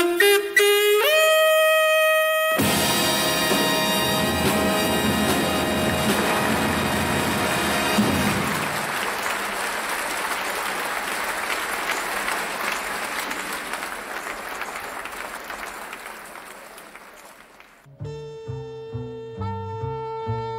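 Jazz theme music: a saxophone line with bending notes settles on a long held note, then the full band comes in with a loud chord and bass about two and a half seconds in. The band sound gives way to a long noisy wash that fades out. Near the end a new tune starts with a repeating bass figure.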